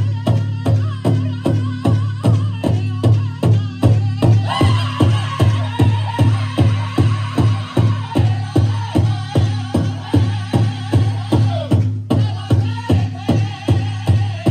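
Powwow drum group playing a grand entry song: several drummers strike a big powwow drum in a steady beat of about two and a half strokes a second. High-pitched singing over the drum swells into full group singing about four and a half seconds in and breaks briefly near the twelve-second mark.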